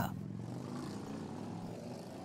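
Steady street background noise with a low hum running under it and no distinct events.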